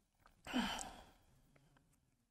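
A man's sigh: one breathy exhale with a brief voiced start about half a second in, fading away within about a second.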